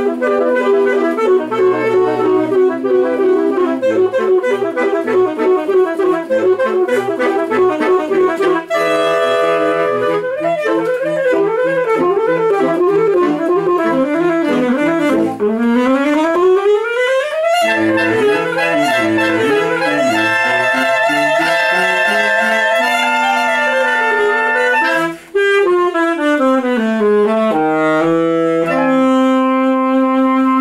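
A saxophone quintet playing together: several saxophone lines moving at once over a lower sustained part, with a fast rising run about halfway through and a brief break about 25 seconds in.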